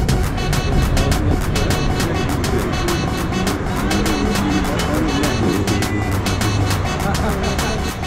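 Music with a steady, fast beat, with city traffic noise and voices underneath.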